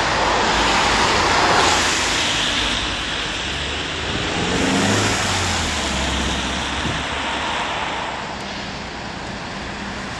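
Road traffic: cars driving past on a wet road, with tyre noise loudest in the first couple of seconds. A vehicle engine passes about halfway through, its pitch dropping as it goes.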